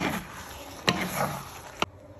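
Squid stir fry sizzling in a hot pan as a cornstarch slurry goes in, with a wooden spatula stirring: a burst of sizzle at the start, a sharp knock of the spatula a little under a second in, and another click near the end.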